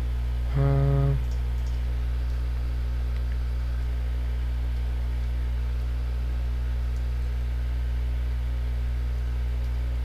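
Steady low electrical hum, mains hum picked up in the headset microphone's recording chain, with a brief voiced "hmm" from a man about half a second in.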